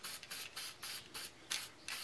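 Aerosol can of Marsh stencil ink sprayed in a rapid series of short hissing bursts, several a second, with brief gaps between them.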